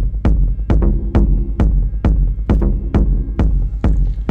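Techno track played from vinyl in a DJ mix: a steady four-on-the-floor kick drum, a little over two beats a second, over a deep, constant bass.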